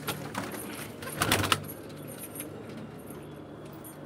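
Domestic pigeons cooing low in a loft, with a short clattering rattle about a second in.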